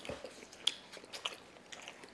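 Close-up chewing of a mouthful of al pastor taco, heard as a few faint, scattered wet mouth clicks.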